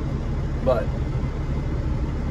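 Caterpillar 3406E inline-six diesel of a Freightliner FLD120 idling steadily, heard from inside the cab, as it airs up the trailer.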